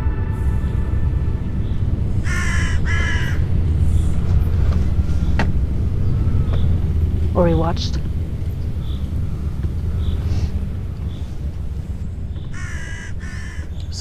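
A crow calling: two short calls about two seconds in and two more near the end, over a steady low rumble. A single fast rising sweep comes about halfway through.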